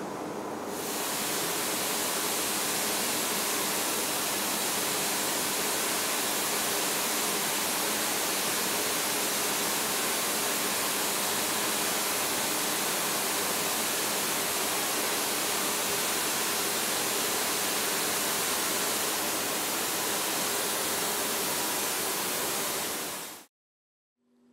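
Cold spray gun running: a loud, steady hiss of heated compressed air at 140 psi carrying silicon carbide powder out of the nozzle at supersonic speed. It starts about a second in and cuts off abruptly near the end.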